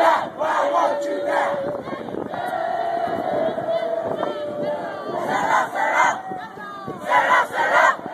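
Group of marching cadets chanting a cadence in unison: loud group shouts near the start, again around the middle and near the end, with a long drawn-out call between them.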